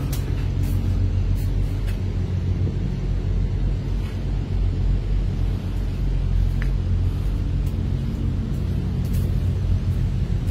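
Diesel semi-truck engine idling: a steady low rumble with an even hum.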